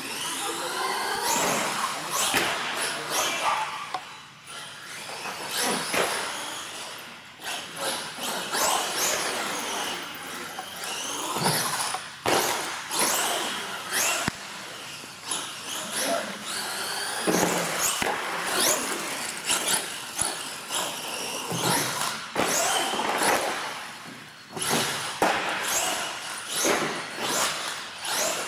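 Electric R/C monster truck's motor whining up and down with the throttle as it is driven hard, with several sharp thumps and clatters as it lands and hits the ramps and floor.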